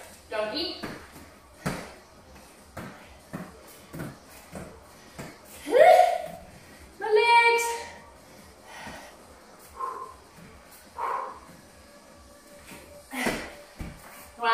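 A woman's voice in a few short calls and breaths, one rising call about six seconds in and a stronger one just after, with scattered soft knocks of hands and feet landing on foam floor mats during a crawling exercise.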